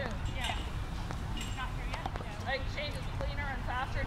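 People talking quietly in the background, with the soft hoofbeats of a horse moving on sand arena footing and a steady low rumble underneath.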